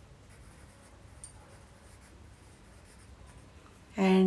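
Pencil writing on a paper textbook page: faint scratching strokes as a single word is written out by hand.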